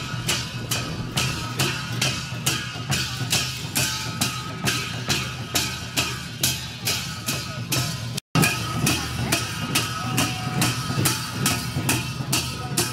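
Sakela dance music played live: a Kirati dhol drum beaten with clashing hand cymbals in an even beat of about three strokes a second. The sound cuts out for a moment about two-thirds of the way through.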